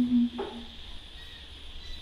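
A group of women's voices ends a long held chanted note just after the start. This leaves a pause in the chant in which only a faint steady high tone and a low hum remain.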